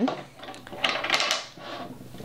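Wooden beads sliding along the metal wires of an IKEA bead-maze toy and clacking together, with a brief rattle about a second in.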